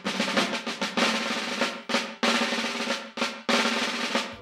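Snare drum rolls in three long bursts, each breaking off sharply, over a steady low held note in the instrumental close of the song.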